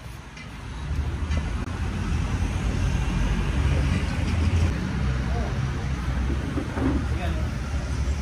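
Street traffic with a motor vehicle engine running close by, a steady low rumble that swells about a second in and holds.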